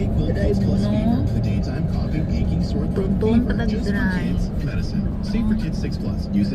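Road noise inside a car moving along a highway: a steady low rumble of tyres and engine, with voices from the car radio talking underneath.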